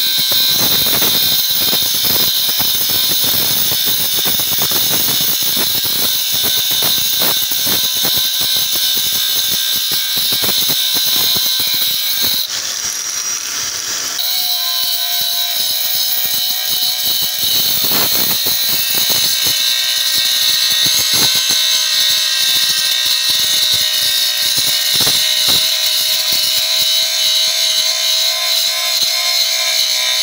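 Electric angle grinder running at full speed with its abrasive disc grinding rust off a steel pipe: a steady high whine over rasping grinding noise. It eases off briefly about halfway through, then goes on grinding.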